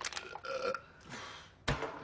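A person burping. Near the end there is a single sharp clack: an empty aluminium beer can landing on a wooden floor.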